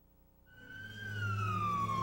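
A police siren starts about half a second in, rising briefly and then sliding steadily down in pitch as it winds down. A low, steady hum runs underneath it.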